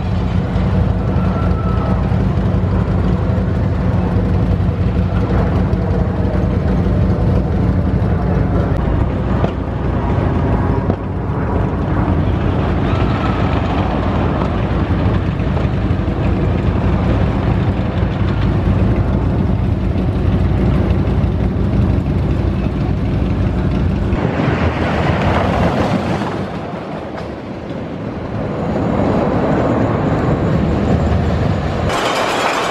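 Wooden roller coaster train running along its wooden track: a loud, steady rumble and clatter. About 24 seconds in the low rumble drops away, leaving a rushing noise, then builds back near the end.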